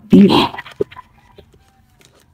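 A woman's voice briefly at the start, then quiet handling of a leather binder and plastic cash envelopes, with a faint click just under a second in.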